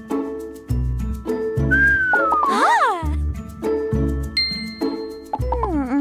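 Upbeat children's background music with a steady bass beat, overlaid with cartoon sound effects: a swooping, gliding whistle-like tone about two seconds in, a bright ding a little after the middle, and another falling glide near the end.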